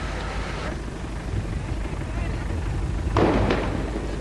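Steady low rumbling noise, with a short voice-like sound about three seconds in.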